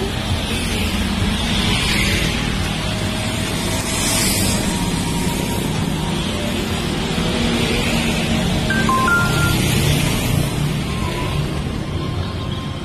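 Road traffic from motorcycles and cars passing close by, a steady rush of engine and tyre noise that swells and eases as each vehicle goes past, with music playing along underneath.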